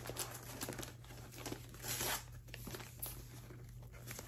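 Gift wrapping paper being torn and crinkled by hand, fairly faint, with a louder rip about two seconds in.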